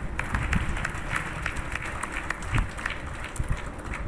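An audience applauding, many hands clapping.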